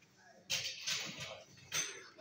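Two bursts of hissing noise: a longer one about half a second in and a short one near the end.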